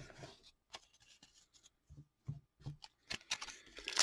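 Faint handling of trading cards and a foil card pack: scattered light taps and rustles that come more often near the end.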